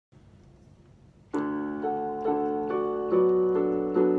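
Portable electronic keyboard on a piano sound, starting a slow introduction. After a faint lead-in of about a second, a chord sounds, and a new note follows about every half second over held lower notes.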